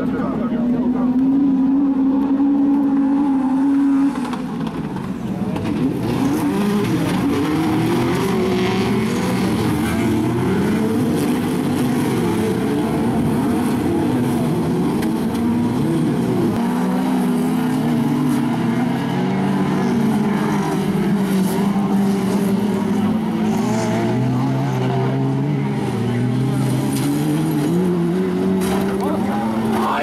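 Engines of a field of autocross cars racing on a dirt track. For the first four seconds they hold one steady pitch. After that, several engines rise and fall in pitch against each other as they rev and shift.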